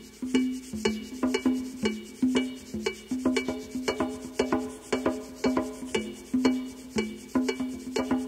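Big-band jazz recording played back from cassette: a syncopated, repeating pattern of short, sharply struck notes, mostly on one low pitch, like a percussion or rhythm-section figure opening the tune.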